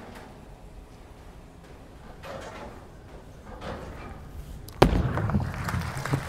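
Bowling ball crashing into the pins about five seconds in, a sudden loud crash followed by a short clatter and rumble.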